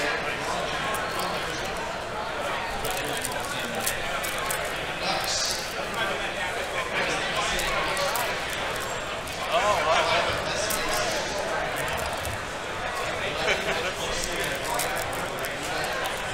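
Steady background chatter of many voices in a large hall. Over it, close crinkling and ticking of a foil trading-card pack wrapper being handled and torn open by hand.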